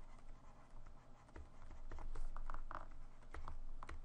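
Stylus scratching and tapping on a graphics tablet while letters are hand-written: a run of short scratchy strokes and light clicks.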